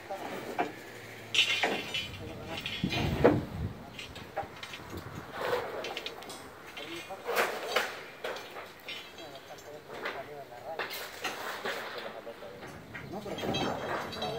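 Indistinct voices of workers talking, with scattered knocks and clatter from hand work on a plywood deck laid with rebar.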